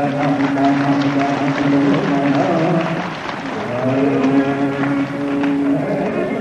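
Carnatic concert music in raga Shankarabharanam: a melodic line of long held notes with slides between them, with struck percussion strokes behind. There is a short break in the line about three seconds in.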